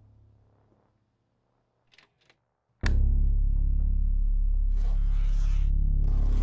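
Film score: a low drone fades out, leaving near silence with two faint clicks, then a sudden loud low music sting hits about three seconds in and holds as a steady drone with hissing swells near the end.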